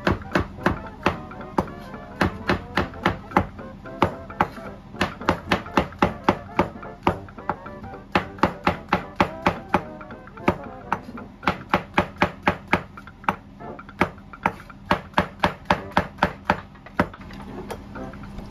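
Chef's knife slicing mushrooms on a plastic cutting board: a quick, even series of knocks, about three to four a second, with a few short pauses. Background music plays faintly underneath.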